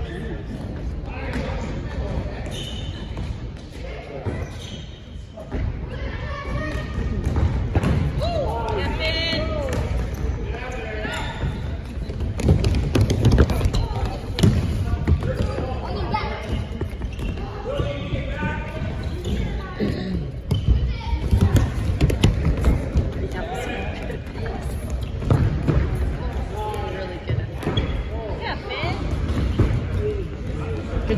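A soccer ball kicked and bouncing on a hardwood gym floor in a large gymnasium, with thuds throughout, over children's voices calling and shouting during play.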